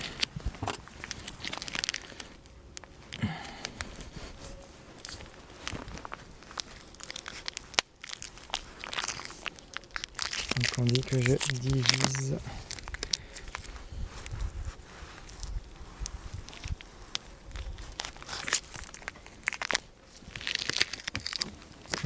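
Plastic wrapping of a block of bee candy (fondant) crinkling and crackling as it is handled and torn open, in irregular rustles and clicks.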